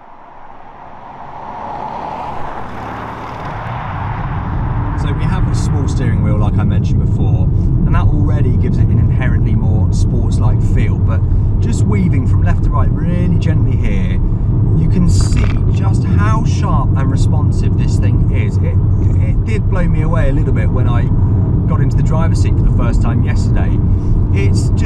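A car approaching along the road, building up over the first few seconds. Then the cabin sound of the Porsche Cayenne Turbo E-Hybrid's twin-turbo V8 being driven briskly through bends: a steady low engine and road drone with many sharp clicks and short wavering higher sounds over it.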